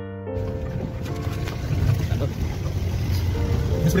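Piano music cuts off right at the start, giving way to a loud, uneven low rumble from the live outdoor recording; a person's brief exclamation comes near the end.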